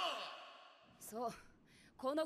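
A short sigh about a second in: a breath out with a brief voiced sound that falls in pitch, after the tail of a man's shouted line fades away.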